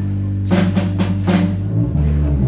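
Live rock band playing an instrumental passage. A low note is held throughout, and about half a second in comes a quick run of about five percussion strikes lasting roughly a second.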